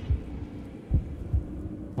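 Soft, low thumps, about four in two seconds at uneven spacing, over a faint steady hum, from the session's background soundscape.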